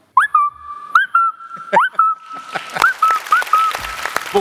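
A boy imitating a mobile phone's message tone with his voice: a run of quick rising chirps and short held whistle-like notes, all near one pitch, repeated several times. From about halfway a broad wash of noise rises behind it.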